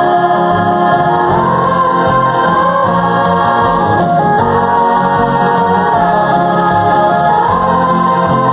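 Live song performance: two girls singing into microphones with a choir and band behind them, holding long notes that change pitch every second or two.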